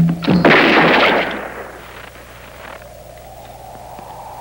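A revolver gunshot film sound effect: one loud blast about half a second in, dying away over a second or so. It is followed by a quiet low tone that slowly rises in pitch.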